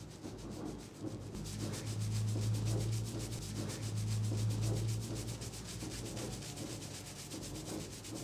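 Fingers rubbing and squishing thick shampoo lather into a scalp in fast, even strokes during a head massage. A low steady hum sits under it from about a second and a half in until about five seconds in.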